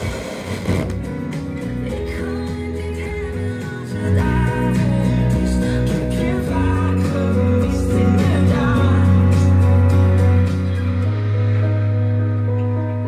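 Music played through a Sansui G-9000 stereo receiver and its loudspeakers, with long held notes over a steady bass, getting louder about four seconds in.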